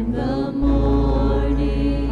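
Church worship team of men and women singing together in harmony into microphones, with instrumental backing and a steady bass underneath; the voices hold long notes, with a brief dip about half a second in.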